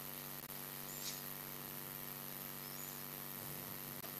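Faint steady electrical mains hum from the microphone and sound system during a pause in speech, with two faint, short, high chirps about one and three seconds in.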